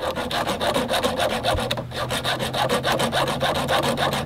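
A hacksaw cuts through a steel L-shaped bracket, the blade rasping in steady back-and-forth strokes on a cut lubricated with WD-40. There is a short break in the strokes about two seconds in.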